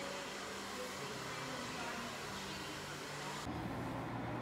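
Hair salon room noise: a steady hiss with faint background voices, changing abruptly near the end to a quieter, steady low hum.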